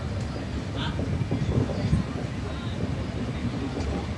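Steady rumble of a moving LHB passenger coach's wheels running on the rails, heard from aboard the train.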